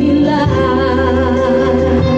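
Live acoustic band: a singer holds a long note with vibrato over sustained chords from acoustic guitar and keyboard, amplified through the PA.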